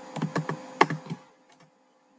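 A quick run of clicks and taps on a computer keyboard and mouse, the loudest just under a second in, stopping after a little over a second, over a faint steady hum.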